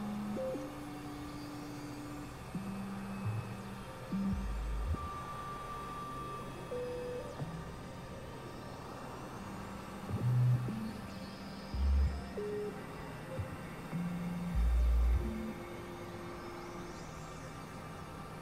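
Sparse experimental synthesizer music: single held tones of different pitches start and stop irregularly over a steady low drone. Short, deep bass notes are the loudest parts, about 4, 10, 12 and 15 seconds in.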